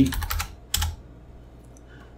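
Computer keyboard keystrokes: a quick run of about five taps in the first half second, then one more a little under a second in, as a value is typed into a field.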